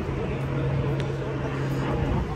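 Loud road traffic: engines of slow-moving cars and vans running close by, with a steady low engine hum.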